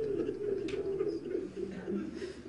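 Men in a congregation weeping, with low, wavering sobs and a choked voice; this is crying drawn out by the sermon's account of the martyrs' suffering.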